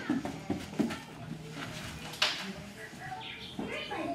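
Quiet room sound with faint background voices, and a single sharp click a little after two seconds in.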